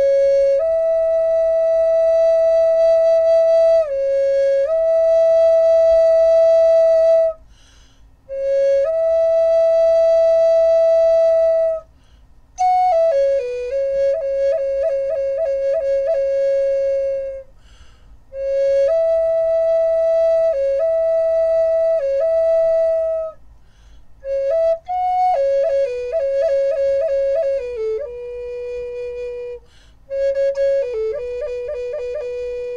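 Wooden flute of sassafras and vera wood playing a slow melody in phrases of long held notes, each phrase ending in a short pause for breath. Several phrases carry quick runs of rapidly repeated note flicks, and the last phrase settles onto a lower note.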